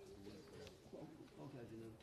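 Faint, indistinct murmur of voices talking away from the microphones.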